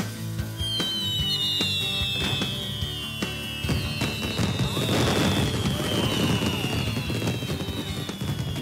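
Cartoon fireworks sound effects: rockets going up and crackling, thickening about four seconds in, over background music with a long, slowly falling whistle-like tone.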